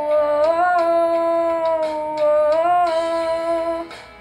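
A boy humming one long held note with closed lips as part of a song cover. The pitch bends up and back a little twice, and the note stops just before the end.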